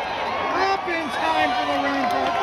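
A man's voice calling a horse race, with long drawn-out words over the noise of the racetrack crowd.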